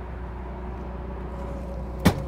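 A steady low mechanical hum with a few faint, steady whining tones above it.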